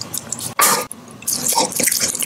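Close-miked wet mouth sounds of biting into and chewing a piece of food, with one loud burst a little over half a second in and smaller clicks after it.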